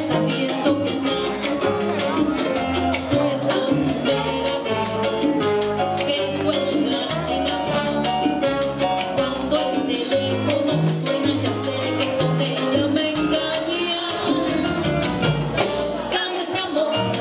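Live salsa band playing, with a steady, quick run of percussion strokes over a moving bass line and keyboard.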